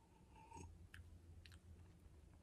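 Near silence with a few faint, short mouth clicks and smacks as a sip of whisky is taken and held in the mouth to taste.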